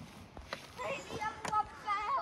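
Faint children's voices in the background, with a few short crunching steps on wood-chip ground.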